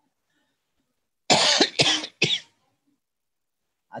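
A person coughing three times in quick succession, about a second in.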